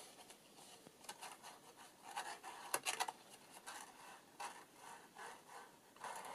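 Paper flaps and pockets of a handmade junk journal being opened and handled by hand: soft, intermittent rustling and scraping of paper, with a sharper click about halfway through.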